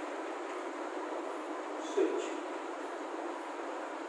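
Chalk writing on a blackboard, with faint scratching strokes about two seconds in, over a steady background hiss.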